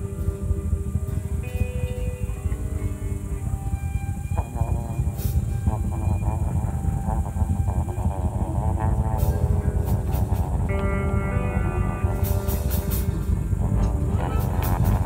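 Live improvised ambient music: held, layered tones over a dense, steady low drone. A wavering, warbling passage runs through the middle, and rapid clicking comes in near the end.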